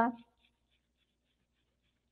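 A woman's word trailing off in the first quarter second, then near silence: faint room tone.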